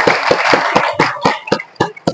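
Group applause, with one set of hand claps close to the microphone at about four a second; the wider clapping thins out after about a second, leaving the near claps.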